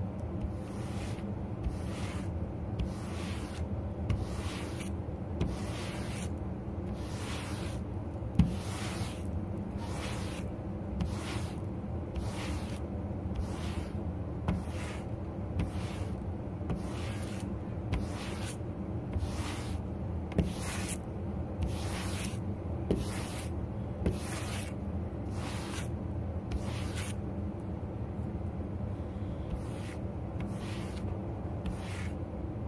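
Brush raking through dyed faux fur in a steady rhythm of scratchy strokes, a little over one a second, working the dyed fur straight and smooth.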